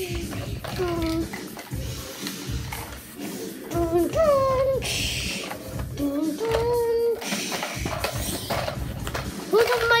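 A child making wordless vocal sound effects, pitched noises that slide up and down, with music playing underneath.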